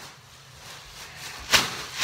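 A quiet stretch, then one sharp knock about one and a half seconds in.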